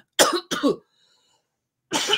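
A woman coughing: two sharp coughs in quick succession, then another starting near the end, into her elbow.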